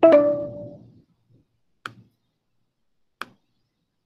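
A short pitched computer alert tone, struck at once and dying away within about a second, followed by two single sharp mouse clicks, one about two seconds in and one about three seconds in.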